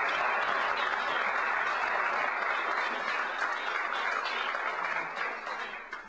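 Audience applauding at the end of a song, a dense, steady clapping that eases off near the end.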